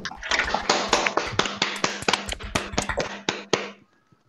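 Applause from several people clapping at once over a video call, many separate microphones mixed together, with a faint low hum underneath. The clapping dies away just before the end.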